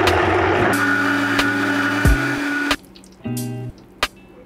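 High-powered countertop blender running, pureeing cooked cabbage and guanciale: a loud, dense whirr with a steady motor whine. It cuts off about two-thirds of the way in.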